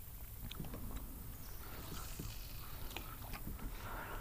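Faint handling of a fishing rod and reel during a lure retrieve: a few scattered soft clicks over a low steady rumble.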